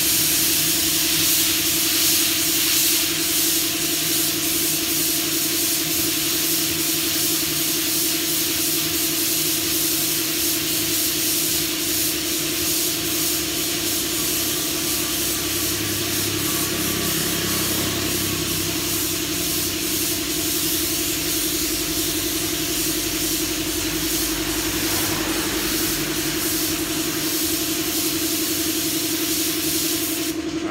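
Gravity-feed compressed-air spray gun hissing steadily as it sprays matte black paint onto a motorcycle fork leg, over a steady low hum.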